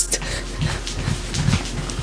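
A person jumping in place: quick breathy huffs and fabric rustling against a clip-on microphone held at the chest, over soft low thumps in a quick rhythm.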